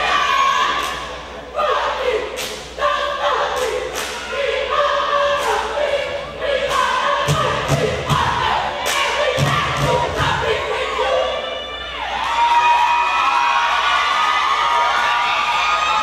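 Cheerleading squad chanting and yelling in unison, punctuated by sharp hand claps and heavy foot stomps on the wooden gym floor. Near the end the chant gives way to a long held yell.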